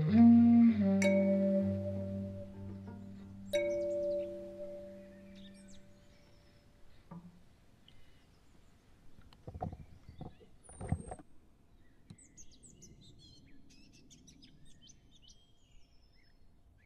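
The last notes of a layered kalimba, cello and clarinet piece: a few bright, ringing kalimba notes over held low tones, all fading out in the first half. Afterwards a few soft low thuds come near the middle, and faint birds chirp toward the end.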